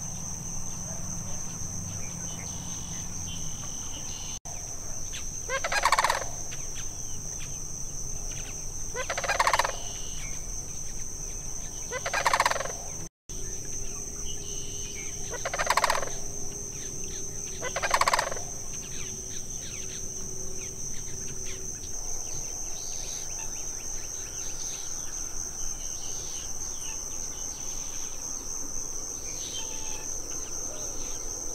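Sandhill cranes giving five loud rattling bugle calls about three seconds apart, over a steady high-pitched insect chorus.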